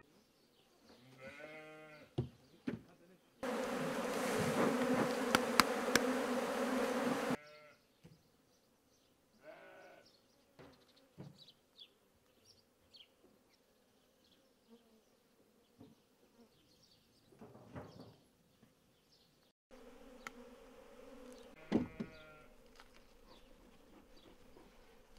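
Honeybees buzzing densely around open hives in two stretches, one about three to seven seconds in and another from about twenty seconds in, each starting and stopping abruptly. Between them the sound is quieter, with a few short bleats from farm animals.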